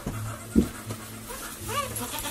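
A young goat kid gives a short bleat near the end. There is a single thump about half a second in.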